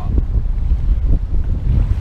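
Wind buffeting the microphone in a loud, gusty low rumble, with small waves lapping against the kayak.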